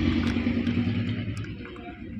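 A low engine hum, loudest at the start and fading toward the end.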